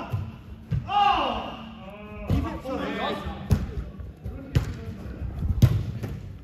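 A football struck several times in play, sharp thuds with the loudest near the end, among men shouting.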